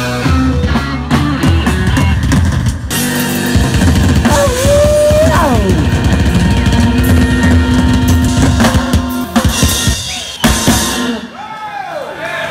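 Live blues band playing: electric guitar, electric bass and a drum kit, with the drums prominent.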